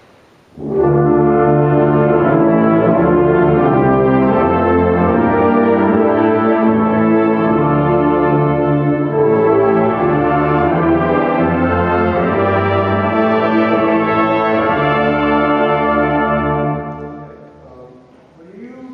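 A wind ensemble plays a loud, sustained chordal passage together, brass to the fore. It enters about a second in and is released near the end, the chord dying away in the hall.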